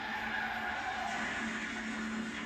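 Car tires skidding on pavement, a steady noisy hiss and squeal picked up by a police dashcam.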